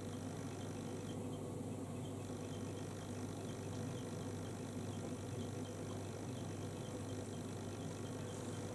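Low, steady electrical hum under a faint hiss: room tone, with no distinct sounds standing out.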